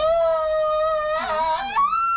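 A child's long, high-pitched scream during a blood draw, held on one pitch and jumping higher near the end, with a shakier second cry layered over it briefly just past halfway.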